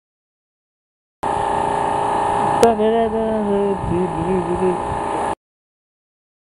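A steady machine hum made of several constant tones starts and cuts off abruptly. About halfway through there is a sharp click, then a man's voice speaks briefly over the hum.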